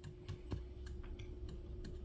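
A few faint, scattered clicks from a hand touching the links of a laser engraver's drag chain, over a faint steady hum.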